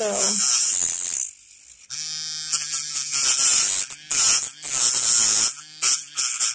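Small electric nail drill running, its flat emery bit grinding the edge of an acrylic nail tip to shape it. The grinding is a loud high hiss that comes in stretches as the bit touches and leaves the nail, with the motor's steady hum showing in between and a short lull about a second in.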